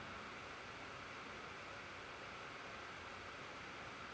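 Faint steady hiss of the recording's background noise (room tone), with nothing else happening.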